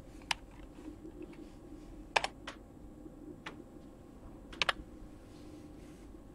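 Key presses on a computer keyboard: a handful of sharp, separate clicks, two of them in quick pairs, over a faint steady hum.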